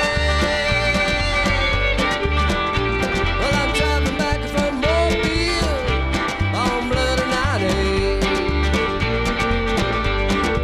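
Country band playing an instrumental break: fiddle sliding over strummed acoustic guitar, upright bass and drums with a steady cymbal beat.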